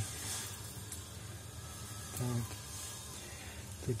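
Faint scraping of a knife inside a gutted rainbow trout's belly cavity, working out the last of the blood along the backbone, with a brief hum from the man a little past the middle.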